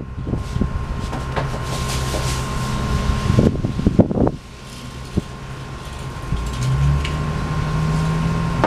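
Steady outdoor background noise: a low rumble and hiss. A few knocks come a little past the middle, and a low hum swells near the end.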